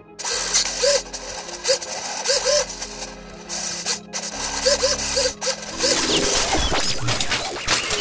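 Arduino-automated hobby servo motor whirring in quick, irregular back-and-forth strokes, each a short whir that rises and falls in pitch; two slightly different takes play at once, one in each stereo channel. A low steady drone runs underneath, and the sound changes character about six seconds in.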